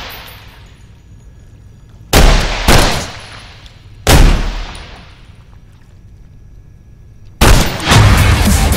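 Three loud gunshots: two about half a second apart a couple of seconds in, and a third about a second and a half later. Each one is followed by a long echoing tail. Near the end a loud, sustained noisy sound cuts in suddenly.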